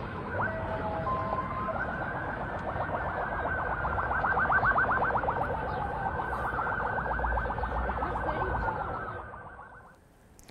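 Several emergency-vehicle sirens sounding at once: slow wails rising and falling overlap a fast yelping siren in the middle, over a low background rumble. They fade out near the end.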